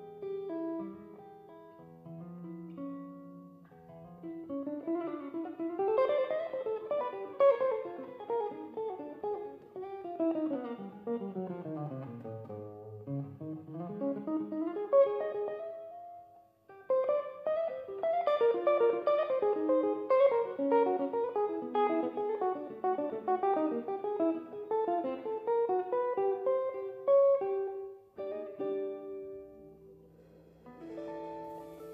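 Hollow-body archtop jazz guitar playing a slow ballad: quick single-note runs, one of them sweeping down to the low notes about halfway through and climbing back, then a stretch of fuller chordal playing, settling onto held notes near the end.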